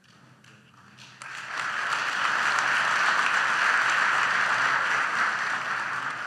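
Audience applauding. A few scattered claps come first, then about a second in the clapping swells into full, steady applause.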